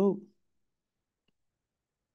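A man's voice finishing a spoken word, then near-total silence with one faint tick about a second in.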